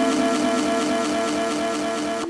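Slowed and reverbed hip-hop track: sustained chords held steady under a long reverb, with no low bass.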